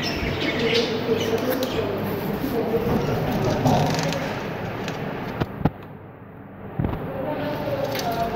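Budgerigar chicks chirping, mixed with a muffled person's voice. A few sharp clicks come about five and a half seconds in and again near seven seconds.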